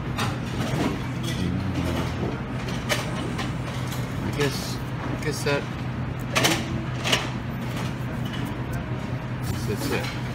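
Restaurant dining-room ambience: a steady low hum under indistinct background talk, with a few sharp clinks of dishes and utensils, the loudest about six and a half and seven seconds in.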